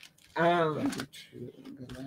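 A man's voice: a short drawn-out vocal sound about half a second in, then quieter speech.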